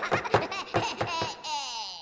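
A Minion cartoon character laughing in a high, squeaky voice in quick bursts, which trail off into one long falling cry near the end.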